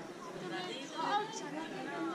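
Indistinct chatter of several people's voices, no words clearly made out.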